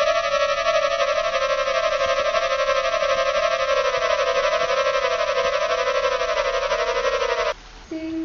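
An electronic tone with a slow up-and-down warble, a little over once a second, like a siren or an eerie synthesiser. It cuts off suddenly shortly before the end.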